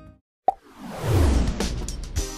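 Background music ends, and after a short silence a sharp pop opens a whoosh that falls in pitch into a low rumble: the sound effect of a TV station's logo ident, with its jingle music coming in after it.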